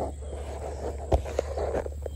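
Handling noise from a handheld phone as its holder walks and turns it around: rustling, with two sharp knocks a little past the middle, over a steady low rumble.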